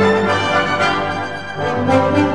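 Orchestra playing zarzuela music with held chords; the sound dips briefly and a new chord comes in near the end.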